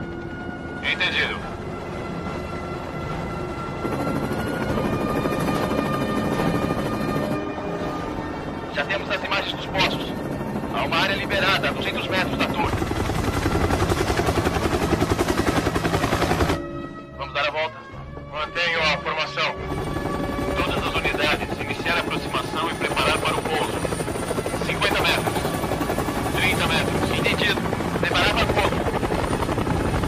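Military helicopter rotors chopping steadily under a film score with long held notes. The rotor noise is loudest a little before the middle, drops out suddenly for about two seconds, then comes back.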